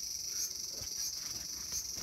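Cicadas buzzing in a steady high-pitched drone that swells in regular pulses about twice a second.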